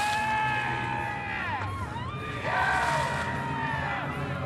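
Splash of a bucket of water dumped over a ballplayer, followed by long high-pitched yells: one that falls away about a second and a half in, and a second starting about two and a half seconds in.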